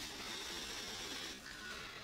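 A long breath blown into a plastic bag, a steady airy hiss that fades out about a second and a half in.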